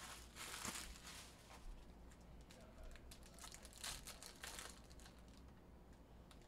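Faint crinkling of foil trading-card pack wrappers being handled and torn open, with a louder rustle in the first second and a run of short crackles around the middle.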